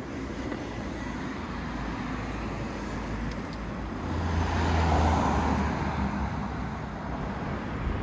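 Street traffic noise, with a motor vehicle passing by that grows louder about four seconds in, is loudest around five seconds, then fades.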